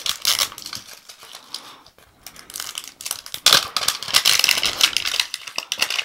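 Clear plastic wrapping being peeled and crinkled off a metal Poké Ball tin, a stream of crackles and small clicks, busiest in the second half.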